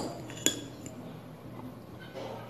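A metal fork clinks twice against a dish, about half a second apart, the second strike ringing briefly.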